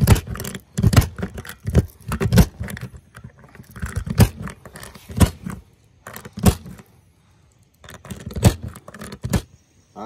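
A speed loader pressing .22 LR rounds into a KelTec CP-33 magazine, with a string of sharp clicks and scrapes at irregular intervals and a short pause about two-thirds of the way through.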